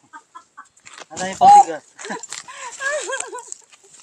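Chickens clucking close by: a loud call about a second in, then a run of shorter clucks.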